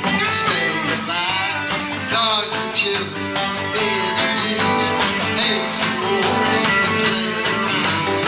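A rock band playing: guitar over a steady drum beat with cymbals, and a melody line that bends in pitch.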